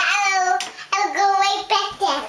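A little girl singing in a high voice: two long held notes with a short one after them.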